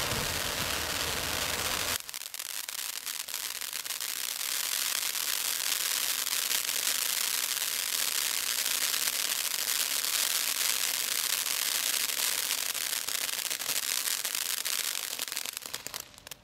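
Firework fountain hissing as it sprays sparks. About two seconds in it switches abruptly to a dense crackling, which dies out near the end.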